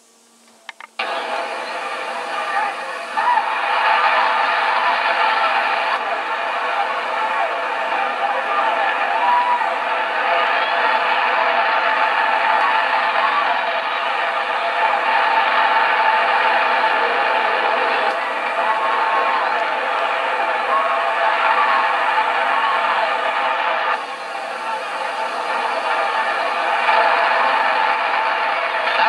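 Boxing-arena crowd noise from an old fight broadcast: a steady roar of many voices, heard thin through a TV speaker. It starts about a second in and dips briefly late on.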